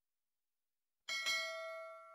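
Notification-bell sound effect for an animated subscribe button: a bell struck twice in quick succession about a second in, its ringing tones fading away.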